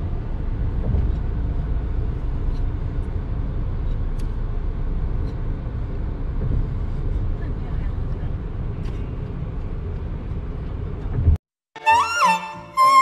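Steady low rumble of car cabin noise heard from inside the car, cutting off suddenly near the end.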